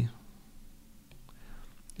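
Faint taps and light scratching of a stylus writing on a tablet screen, a few small ticks spread across a quiet pause.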